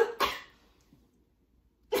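A woman coughing into her elbow: short coughs right at the start.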